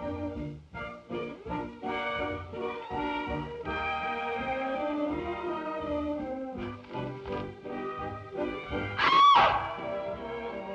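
Orchestral film score playing, with a loud, brief high sound about nine seconds in that rises and falls in pitch.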